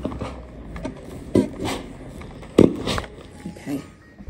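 A clothes iron being pushed across fabric on a work table, with short knocks and rustles about one and a half seconds in and again, loudest, about two and a half seconds in.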